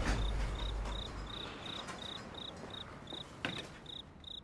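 Crickets chirping in short regular chirps, about three a second, as the low tail of background music fades out in the first second. A single sharp click about three and a half seconds in.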